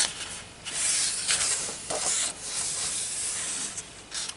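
Paper pages of a large colouring book being turned and smoothed flat by hand: a rustling, rubbing sound of hands sliding over the paper, with a few brief louder swishes.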